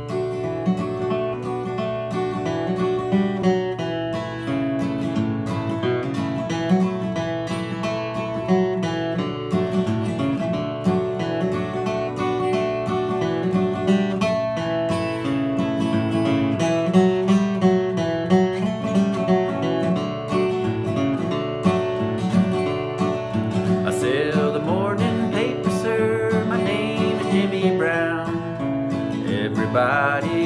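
Solo acoustic guitar playing the tune of a traditional country song, melody over a steady bass line. About 24 seconds in, a man's voice starts singing along.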